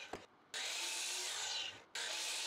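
Miter saw blade, bevelled at 15 degrees with the depth stop set, cutting a shallow notch groove across a pine 4x4: a steady hissing cut that drops out briefly twice.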